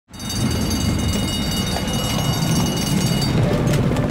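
Harness-racing start: trotters pulling sulkies close behind a moving starting gate, a loud steady rumble of hooves, wheels and the gate vehicle. Thin high steady tones ride over it and stop about three seconds in.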